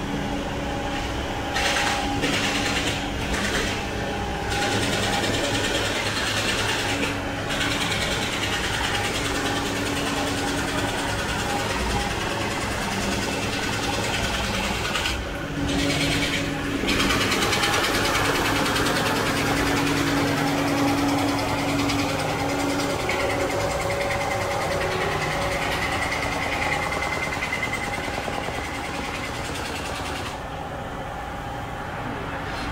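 Steady hum of a running engine amid traffic noise on a city street. There is a brief dip about halfway through, and a higher steady whine joins in later.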